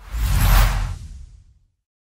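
Intro sound effect: a whoosh over a deep low rumble that swells in the first half second, then fades away over about a second.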